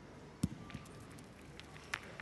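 Metal pétanque boule landing and rolling on the gravel court: a sharp knock about half a second in and a second click near the end, over faint indoor arena ambience.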